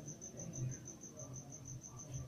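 A cricket chirping steadily, a faint high pulsing trill of about eight pulses a second, with soft sounds of hands working dough.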